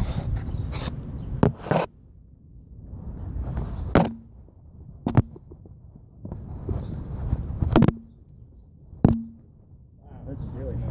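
Handling noise from a carried phone: rustling swells of fabric rubbing over the microphone, broken by about six sharp knocks as the phone is jostled.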